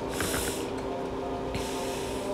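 Water poured from a stainless-steel kettle into a pot of jollof rice, heard as a hiss in two short spells: one just after the start and another in the last half-second.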